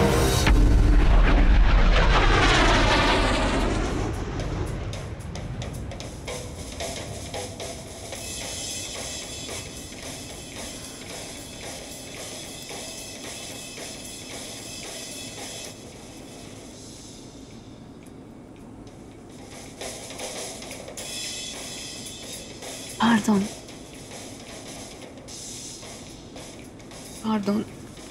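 A jet airliner passing with a loud whoosh and deep rumble over the first few seconds. Then quieter airliner cabin noise, with drum-heavy music leaking thinly from a passenger's earbuds, loud enough to annoy the person in the next seat.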